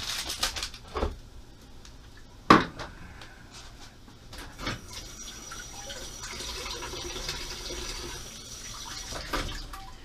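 Kitchen tap running into the sink for about four seconds, starting about halfway through. Before it come a few clinks and one sharp knock, the loudest sound, about two and a half seconds in.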